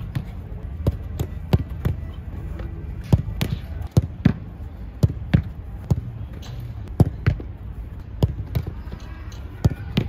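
Footballs being kicked and struck in quick succession at a goalkeeper reaction drill: a run of sharp knocks, about two a second and unevenly spaced, as the balls are kicked and hit the wooden table, the turf and the keeper's gloves.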